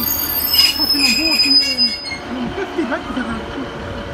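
Class 150 diesel train at a platform: a high, steady squeal starts about half a second in and cuts off suddenly about two seconds in, over a low hum.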